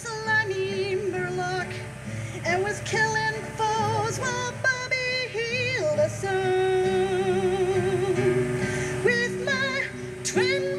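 A woman singing a folk song live to her own strummed acoustic guitar. Her voice has vibrato, and she holds one long note through the middle.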